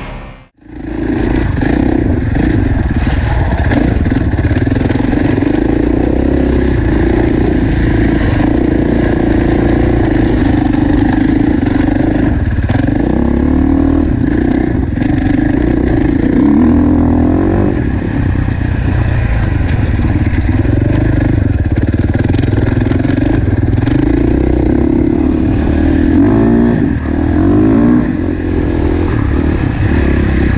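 KTM four-stroke single-cylinder dirt bike engine heard close from an onboard camera, running hard with the revs repeatedly climbing and dropping as the rider accelerates and shifts along the track. It starts about half a second in, right after music cuts off.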